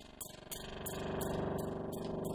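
Karplus-Strong synthesis from an Intellijel Rainmaker eurorack module's comb resonator. Short white-noise bursts from its ping trigger repeat about three times a second, each plucking a string-like pitched tone. With the comb feedback raised, the tone sustains and swells into a steady, louder ringing note.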